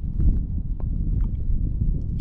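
Low, uneven rumble of wind buffeting the microphone, with a few faint ticks.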